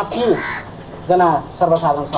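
A man speaking in short phrases.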